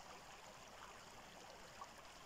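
Near silence: only a faint, steady hiss of shallow stream water.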